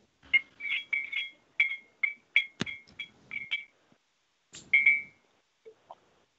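A quick run of about a dozen short electronic beeps, each with a click, over three and a half seconds, then one slightly longer beep about five seconds in.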